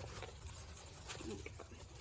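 Faint handling sounds of nylon harness strap webbing being fed through a small metal clip: soft rustling with a few light clicks, over a low steady hum.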